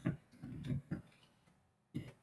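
Two sharp clicks at a computer as text is entered into a document, about a second apart, with a low muffled sound between them.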